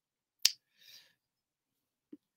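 A single sharp click about half a second in, followed by a faint short hiss.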